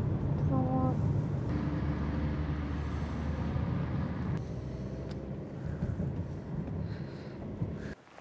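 Steady low rumble of a car's engine and road noise heard from inside the moving car's cabin, slowly getting quieter toward the end.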